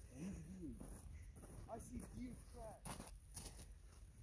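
Faint, distant voices of people talking and calling out, with a few short clicks about three seconds in.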